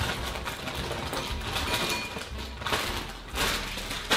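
Potato chips poured out of a crinkling plastic bag into a bowl: continuous rustling with a few sharper clatters of chips landing, a little before the end.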